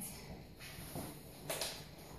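A woman breathing hard after a set of push-ups: three breathy exhales about a second apart.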